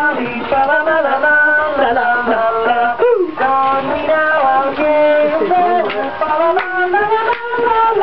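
A Christmas song with singing, played by an animated dancing snowman figure.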